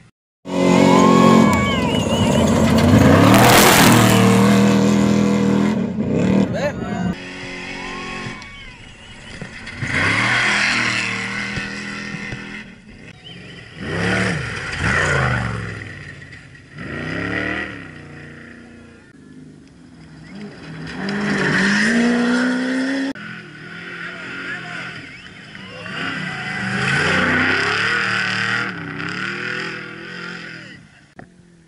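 Off-road desert race trucks (Trophy Trucks and Class 1 racers) speeding past one after another on a dirt course. Their engines rev up and fall away with each pass. There are about six passes, the longest and loudest in the first few seconds.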